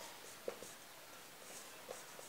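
Marker pen writing on a whiteboard: faint strokes, with two small taps, one about half a second in and one near the end.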